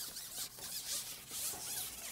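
Carbon fishing pole being shipped back hand over hand after hooking a fish, giving a continuous uneven rasping as the pole sections slide back.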